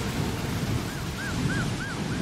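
Hurricane-force wind, with gusts buffeting the microphone, making a loud, even rushing noise. From about a second in, a short high tone repeats about three times a second.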